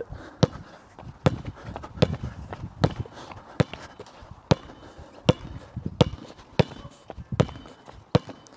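A basketball dribbled on a hard court, one bounce about every three quarters of a second in a steady rhythm.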